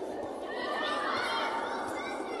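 A high-pitched, drawn-out shout rises over the hall's crowd noise about half a second in and holds, wavering in pitch, for over a second.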